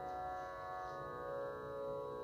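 Soft, steady sruti drone: several sustained pitches held without a break, sounding the tonic for Carnatic singing.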